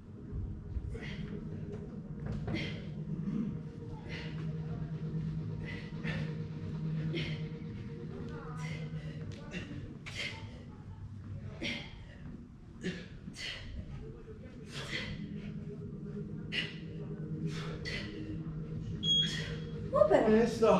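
Two people breathing hard during a set of V-ups, with sharp exhalations about once a second over a steady low hum. A short electronic interval-timer beep sounds near the end, marking the end of the work interval.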